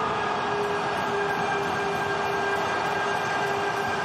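Football stadium crowd cheering a home goal, a loud steady roar with a held tone running through it.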